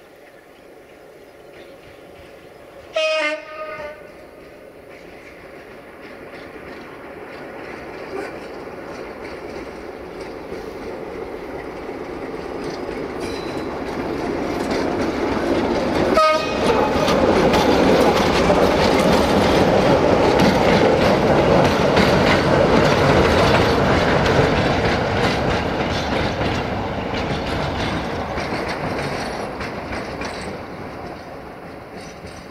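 A CFR Class 060-DA (LDE2100) diesel-electric locomotive with a Sulzer diesel engine, running light. It sounds its horn about three seconds in and gives another short toot near the middle. Its engine and wheels on the rails grow steadily louder as it approaches, are loudest as it passes, then ease off slightly.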